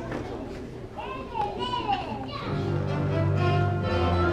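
Children chattering in a large hall, with a child's high voice rising and falling about a second in. About two and a half seconds in, an orchestral accompaniment track begins and holds steady.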